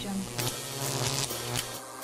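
Sound design for an animated logo intro: a steady low buzzing hum under a string of short whooshing sweeps.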